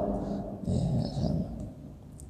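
A man's soft, low, indistinct murmur lasting under a second, between phrases of reading aloud.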